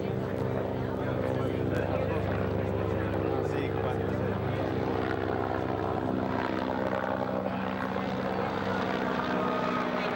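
A steady droning hum holding several pitches, like an engine or a propeller aircraft, under people talking.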